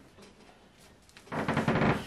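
Upright freezer door being pulled open: a short rasping rush of about half a second near the end, as the door seal lets go.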